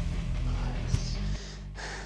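Heavy breathing and gasping from a man who has just finished a hard set of jumping jacks, over background music with a steady bass line. The music drops quieter a little over a second in.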